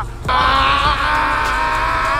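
A man's scream from a dubbed film soundtrack, starting after a brief gap about a quarter second in, loud and held, with a wavering pitch.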